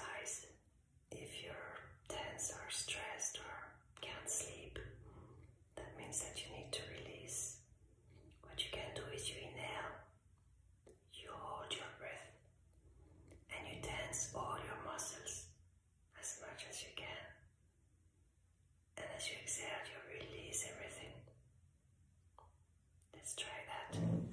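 A woman whispering slowly in short phrases, with pauses between them.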